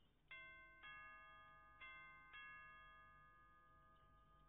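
Doorbell chime rung twice: a two-note ding-dong, high then low, sounding about a second and a half apart, each note ringing on and fading slowly.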